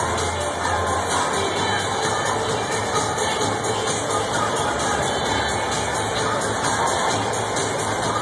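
Music playing in a football stadium over a steady din of crowd noise.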